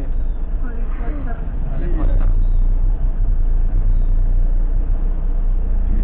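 Steady low rumble of the ambulance's engine and road noise heard inside the cab while it drives slowly in traffic, with faint talk in the first two seconds.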